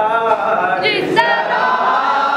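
Men's voices singing a nauha, a Shia mourning elegy, unaccompanied, with a lead reciter and other voices singing together in chorus.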